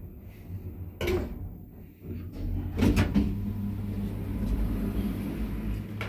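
Ayssa lift's automatic sliding doors opening at a floor: a sharp mechanical click about a second in, then clunks from the door mechanism about three seconds in, followed by a steady low rumble as the doors run open.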